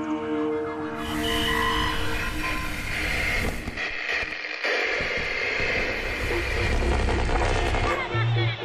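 Documentary soundtrack: a held drone note, giving way about a second in to a dense noisy sound-effect wash. The wash breaks off briefly around the four-second mark, then returns with a low rumble.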